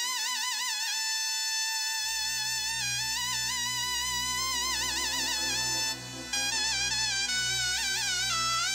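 Balkan Roma band music: a lead melody played with wide, wavering vibrato, joined about two seconds in by a steady low bass line.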